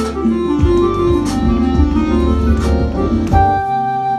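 Flute sound triggered from a MalletKAT electronic mallet controller, playing a melody over a backing track with a bass line and a beat. About three and a half seconds in, the bass and beat stop and a final chord is held, the song's ending.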